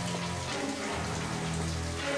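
Shower water spraying steadily onto a tiled stall, with low held music notes beneath it.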